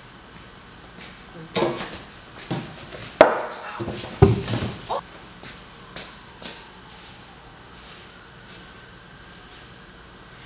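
Knocks, thumps and scrapes of a large plywood sheet being picked up and handled by two people, the loudest knocks a little after three and four seconds in, then a few lighter taps before it settles.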